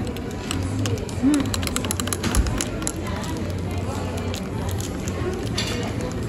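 Metal teaspoon stirring coffee in a ceramic cup, with a run of light clinks in the first half, over background chatter and a steady low hum.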